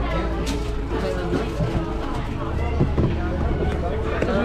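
Indistinct voices of several people talking, over a steady low rumble.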